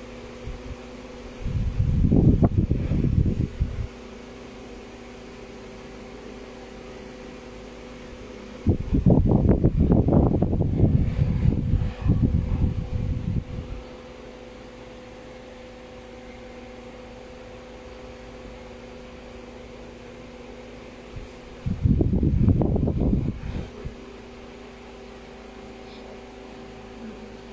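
Steady hum of a room fan or air conditioner, carrying a few faint level tones. It is broken three times by loud bursts of low rumbling noise: one about two seconds in, a longer one of about five seconds near the middle, and a short one near the end.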